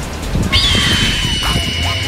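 A high, drawn-out creature screech from an animated pterosaur, starting about half a second in with a quick upward flick and then held at one pitch for nearly two seconds, over background music.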